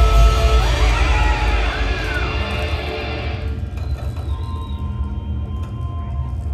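Live indie rock band, with electric guitars, keyboard and drums, playing loud and dense, with a couple of rising-and-falling pitch sweeps about a second in. The full sound cuts out about three and a half seconds in, leaving a low rumble and a few faint held tones from the amps and keyboard.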